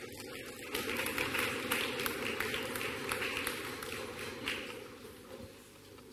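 Audience applause: many hands clapping, building up about a second in and dying away near the end.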